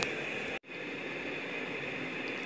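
Steady hiss of room noise with no distinct event, cut to silence for an instant about half a second in where two recordings are joined.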